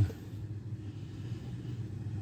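Steady low background rumble with no distinct sounds in it.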